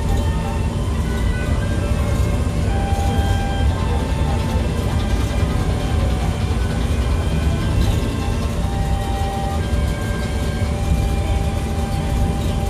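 Steady low rumble of a monorail car running along its elevated track, with music playing over it as a melody of short held notes.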